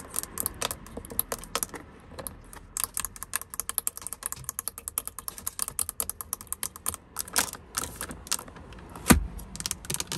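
Long acrylic fingernails tapping rapidly on the buttons and casing of a headrest DVD player, a quick, uneven patter of light clicks. One heavier knock about nine seconds in is the loudest sound.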